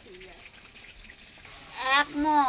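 Faint voices in the background over a low hiss, then a woman starts speaking loudly near the end.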